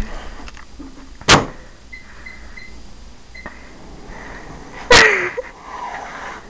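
A microwave oven's door shuts with a knock, then its keypad gives a quick run of short high beeps, with one more beep a moment later. Near the end comes a sudden loud sound whose pitch falls.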